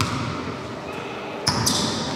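Basketball bouncing on a wooden sports-hall floor, with one hit at the start and another about one and a half seconds in, followed by short high squeaks.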